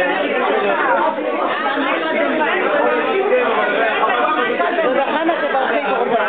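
Several people talking at once: overlapping, continuous conversational chatter with no single voice standing out.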